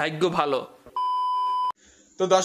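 A man's voice for a moment, then a single steady electronic beep, a bit under a second long, that cuts off abruptly.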